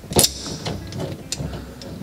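Locking pliers on the metal locknut of a pop-up sink drain: one sharp metallic click just after the start, then a few fainter clicks as the nut is turned tight.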